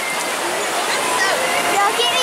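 Steady rush of whitewater around a river-rapids ride raft, an even hiss, with riders' voices faintly over it near the end.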